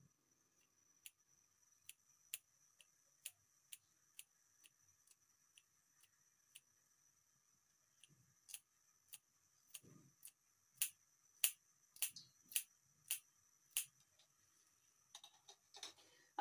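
Small scissors snipping green chillies into fine pieces: a run of short, sharp clicks as the blades close. The clicks are sparse and faint at first, then louder and more regular, about one every half second, in the second half.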